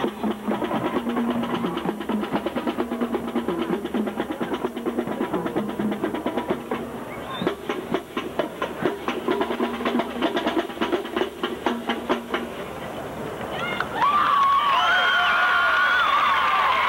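Marching band percussion playing a fast, rhythmic drum passage over low sustained notes from the band. About two seconds before the end, crowd cheering and shouting swells in louder.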